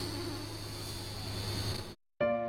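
Electronic sound effect for an animated logo intro: a steady buzzing, crackling shimmer over a low hum, fading out just before the end.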